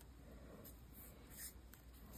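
Near silence: faint scratching and rustling of a crochet hook being worked into yarn stitches, with a few soft ticks.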